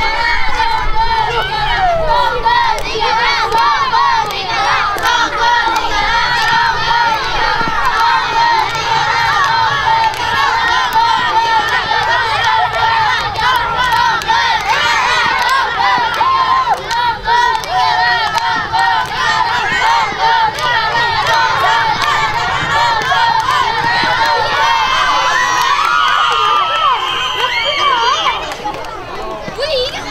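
A crowd of children shouting and shrieking together, a continuous loud mass of overlapping young voices.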